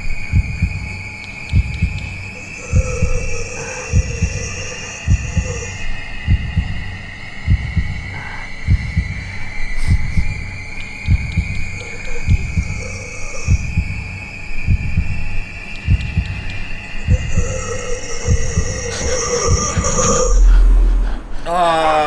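Heartbeat sound effect from a horror video's soundtrack: slow, even low thumps about once a second under a thin, high ringing tone that slowly rises in pitch. A loud low boom near the end.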